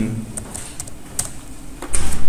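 Computer keyboard typing: a quick, uneven run of individual key clicks.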